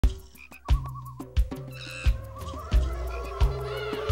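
Instrumental introduction of a Broadway show tune, played by a pit band. A low drum and bass note land together about every two-thirds of a second in a slow, steady beat, and wavering, trilling pitched sounds play above it.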